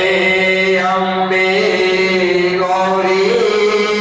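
Devotional chanting of a Hindu aarti: voices sing long held notes that shift in pitch every second or so, over a steady low tone.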